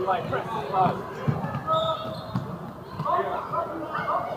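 A futsal ball thudding on a hardwood indoor court as it is kicked and bounces, a few knocks, the sharpest about a second in, with voices calling out in the hall.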